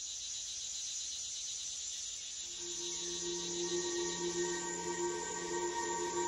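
Ambient film soundtrack: a steady, high, shimmering hiss like chirring insects, joined about two and a half seconds in by a low drone of several held notes.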